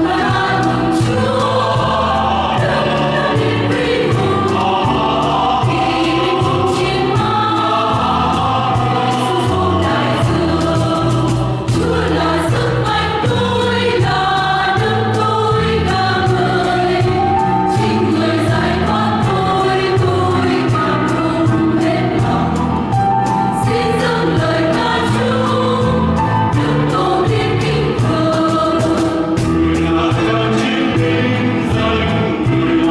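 A mixed church choir singing a Vietnamese Catholic hymn in harmony, over a steady low keyboard accompaniment.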